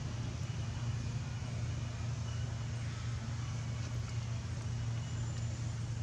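A steady low motor drone that runs on without change, under a faint even hiss.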